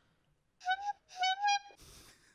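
Whistle-like notes at one pitch: two short ones, then a longer held note that rises slightly, followed by a soft hiss.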